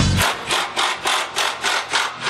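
Rhythmic rasping strokes of a hand tool working on metal at a car's front end, about four strokes a second, starting just after a music track cuts off.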